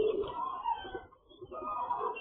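A flock of pigeons cooing, mixed with the chirping of many small poultry, heard through a security camera's narrow, muffled microphone.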